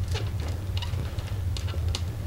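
Small, irregular clicks of a screwdriver tip tapping and scraping on a small screw as it feels for the screw head and hole, with a steady low hum beneath.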